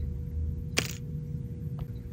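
A single sharp, short click about a second in as the rear camera module is pried free of the iPhone's frame with a spudger, over a faint steady hum.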